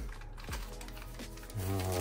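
Background music with steady held notes, over faint clicks and rustling of packaging as a wrapped item is lifted out of a cardboard box.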